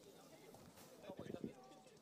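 Near silence, with a brief soft murmur of a voice about a second in.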